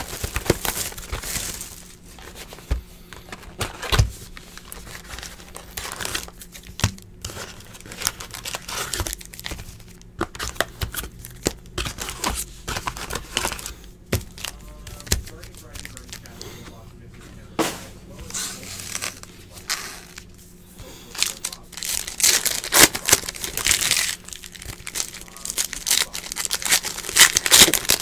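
Plastic shrink-wrap and foil card packs crinkling, tearing and rustling in the hands as a Donruss Optic baseball hobby box is unwrapped and opened, with a run of louder crackles near the end.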